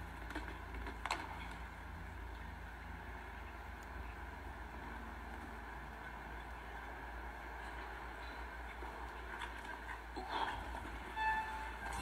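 Steady arena background noise with a constant low hum, as heard on a show-jumping broadcast. A few short faint tones sound near the end.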